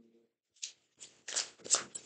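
A deck of tarot cards being shuffled by hand: a few short, soft papery swishes from about half a second in, the loudest near the end.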